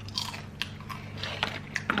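Close-miked eating of fried chicken: chewing and biting, with scattered wet mouth clicks and small crunches.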